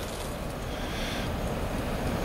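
Wind blowing across the camera microphone: a steady low noise with no distinct events.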